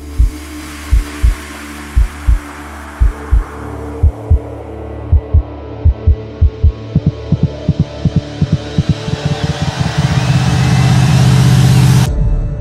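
Cinematic build-up on the soundtrack: low heartbeat-like double thumps that come faster and faster, under a swelling rush that rises in pitch and grows to a loud peak near the end, then cuts off.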